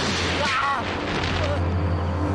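Horror-drama soundtrack: a steady low drone with a sudden noisy hit at the start, and a short high-pitched cry about half a second in.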